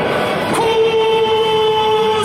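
A stadium PA announcer calls out a player's name over the loudspeakers, holding one long, steady note on the drawn-out last syllable.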